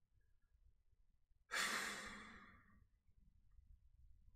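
A man sighing once into the microphone: a sudden breathy exhale about a second and a half in that fades away over about a second.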